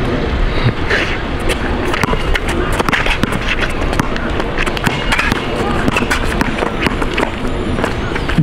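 A basketball being dribbled on an outdoor hard court, with many sharp bounces and scuffing footsteps, over a steady noisy rumble. Indistinct voices are mixed in.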